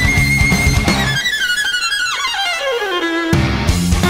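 Neoclassical metal instrumental led by violin, with electric guitar, bass and drums. About a second in, the drums and bass drop out and the violin plays a long descending run alone. The full band comes back in just before the end.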